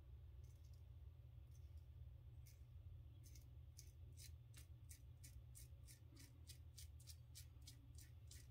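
Gem Damaskeene safety razor scraping through lathered stubble on the neck: faint, quick crisp strokes. They are sparse at first, then come about three to four a second from a couple of seconds in.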